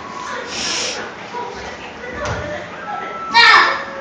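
Small children playing rough on a floor, with scattered faint sounds and then a loud, high-pitched child's shout near the end.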